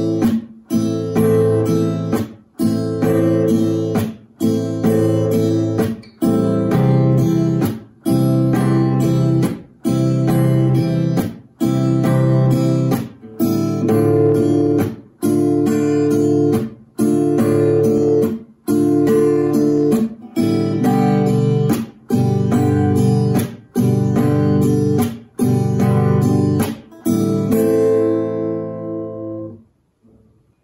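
Classical guitar strummed slowly in the beginner pattern down, up, muted down, up, through the open chords Am, C, Dm and G. The muted downstroke cuts the strings off about every second and a half, and the last chord is left ringing and fades away near the end.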